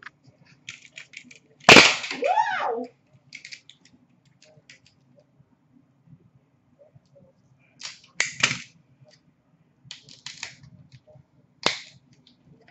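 Hockey card packaging being handled and opened by hand: a loud sharp snap about two seconds in, followed by a brief squeaky sliding sound, then light rustles and clicks and two more sharp snaps later on.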